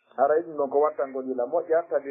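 Speech only: a man lecturing, talking continuously.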